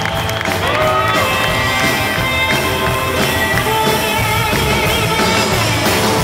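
Live band playing rock and roll, with electric guitar and drums.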